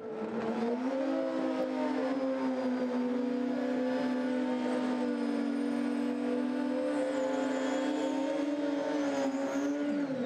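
Super street drag bike doing a burnout: the engine is held at a steady high rev, rising slightly about a second in, while the rear treaded tyre spins and smokes on the track.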